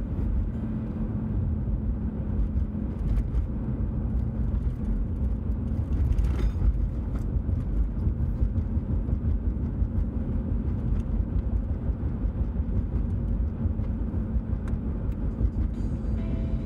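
Steady low road and engine noise of a car driving, heard from inside the cabin.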